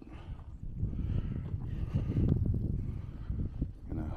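Fat-tyre electric bike rolling over a rough trail: a low rumble full of irregular knocks and rattles, loudest about halfway through, with wind buffeting the microphone.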